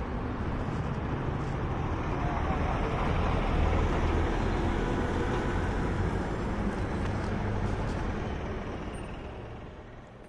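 Road traffic noise: a heavy goods truck passing close by on the highway, its engine rumble and tyre noise swelling for a few seconds and then slowly fading away.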